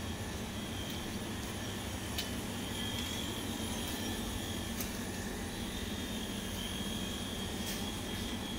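Steady background hum and hiss of a shop interior, with a faint high whine held throughout and a few faint clicks.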